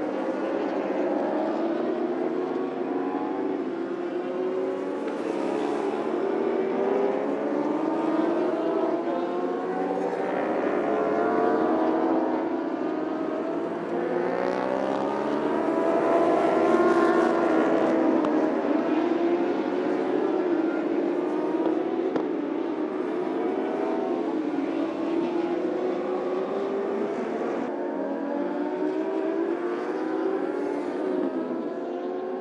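Several superbike racing engines at high revs, overlapping, their pitch rising and falling as the bikes accelerate, shift and go past.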